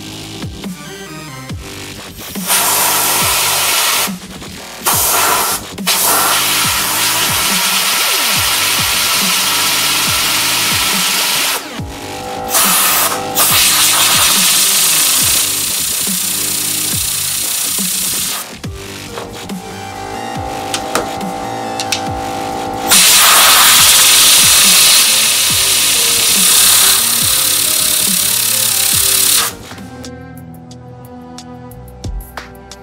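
Compressed air hissing from an air blow gun in several abrupt blasts, the longest about six seconds, spinning steel ball bearings held on a neodymium magnet. Electronic music plays underneath throughout.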